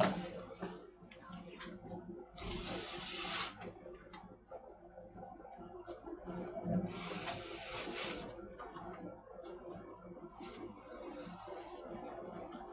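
Kangaroo leather lace strands being pulled and handled around a whip core, with faint rustling and two hissing swishes of about a second each, a couple of seconds in and again around seven seconds in.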